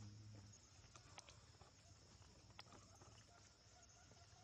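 Near silence: faint outdoor background with a thin steady high tone and a few soft clicks about a second in and again past halfway.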